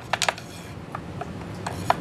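A wooden stick pushed down into a narrow wooden battery channel, rubbing and scraping against its sides, with a quick run of sharp clicks at the start and a few light taps later.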